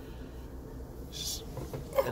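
A plastic seasoning jar being handled over a mixing bowl: one short rustling hiss about a second in, then a small click near the end.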